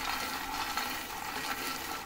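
Dry fox nuts (makhana) being stirred with a wooden spatula in a pan while dry-roasting on a low flame: a steady, even rustling hiss.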